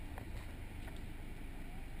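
Naturally aspirated Subaru's flat-four engine idling, a low steady rumble heard from inside the cabin.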